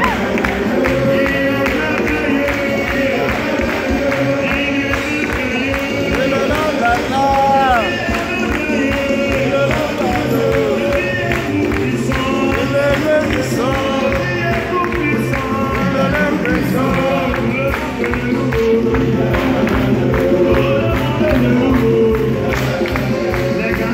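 Live gospel worship music: a choir singing over a band with a steady bass line and a beat, the congregation singing along.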